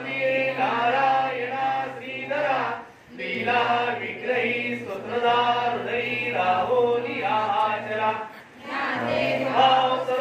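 Voices chanting a devotional prayer in unison, in long sung phrases. They break off briefly for breath about three seconds in and again near eight and a half seconds.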